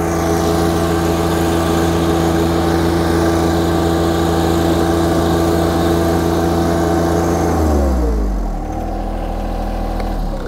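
John Deere 1025R compact tractor's three-cylinder diesel running steadily at high speed while driving a PTO-powered lawn sweeper. A little under eight seconds in, its pitch drops and it settles to a lower engine speed.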